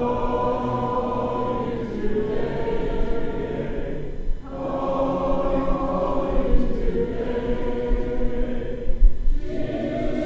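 A church congregation singing a hymn unaccompanied in four-part harmony, in long held phrases with short breaks for breath between them.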